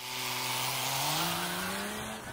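Volvo FH semi-truck's diesel engine pulling away, its pitch rising steadily as it accelerates, with a steady hiss over it.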